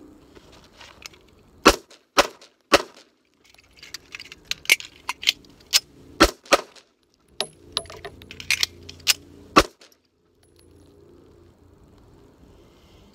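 1911 pistol fired in three quick strings of shots, about a dozen in all, with short pauses between strings; the firing stops about ten seconds in.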